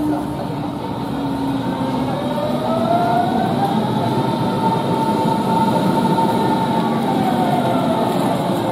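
Berlin S-Bahn electric train pulling out of the station: its traction motors whine, rising in pitch as it gathers speed, then levelling off, over a steady wheel-on-rail rumble.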